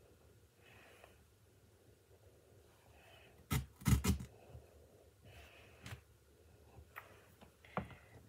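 A few short clicks and knocks from craft items being handled on a table, the loudest a quick cluster about three and a half to four seconds in, with single lighter clicks later on.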